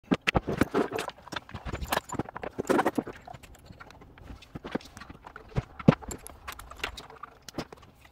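Quick clicks, taps and knocks of a phone and cable plugs being handled and plugged into a small radio transceiver, busiest in the first three seconds and sparser after, with one sharper knock about six seconds in.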